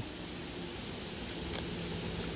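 Steady background hiss with a faint low hum underneath, with no distinct event.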